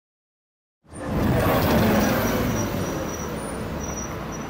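After about a second of silence, city road traffic comes in abruptly: a vehicle passes close, loudest about two seconds in, then the traffic settles to a steady rumble.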